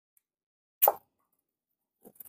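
One short click about a second in, against otherwise near-total silence.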